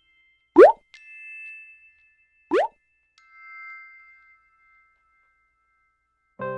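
Soft sustained chime notes from an added backing track, with two quick upward-gliding plop sounds about two seconds apart, the first the loudest.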